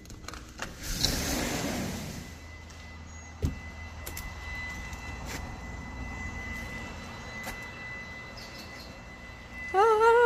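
Outdoor background: a steady low rumble with a brief swell of noise about a second in, a faint steady high tone, and a few soft clicks.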